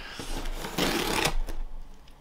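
Knife blade slicing through packing tape on a cardboard box: a scratchy rasp lasting about a second and a half, loudest just past halfway, ending in a small click.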